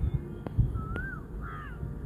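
A bird calling: two short notes that rise and then fall in pitch, about a second in and again half a second later, over faint clicks and a low background rumble.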